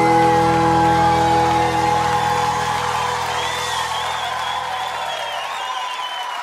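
A live pagode band's closing chord held and slowly fading out, its low notes dropping away near the end, as a crowd whoops and cheers over it.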